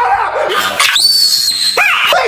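Distorted, pitch-shifted cartoon voice lines, then about a second in a long, high-pitched, steady scream from the shark puppet character.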